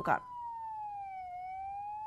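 Police siren wailing, one slow cycle of pitch falling until a little past halfway and then rising again.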